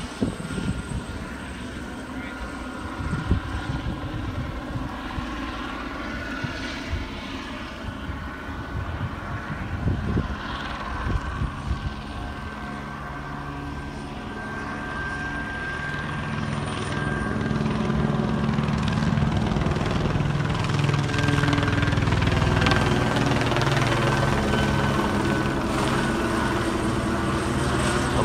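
Helicopter circling overhead, a steady rotor and engine drone that grows louder through the second half as it passes nearly overhead.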